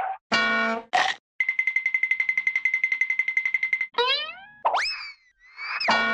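A string of comic sound effects. Two short blips come first, then a rapid pulsing tone of about a dozen beats a second. After that, springy pitch glides rise and fall in quick succession.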